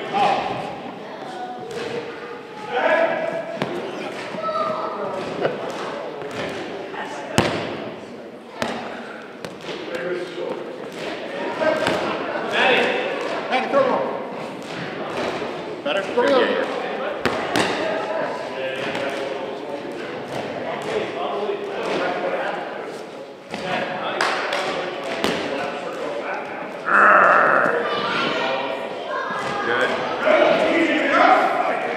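Rubber dodgeballs bouncing and thudding on a gym floor several times, echoing in the hall, over indistinct voices.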